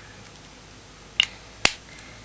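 Two short, sharp plastic clicks about half a second apart, a little over a second in: the cap of a Rimmel lip tint pen being handled and snapped on or off.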